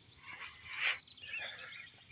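Small birds chirping in the background, short scattered calls, with a brief soft noise just before a second in.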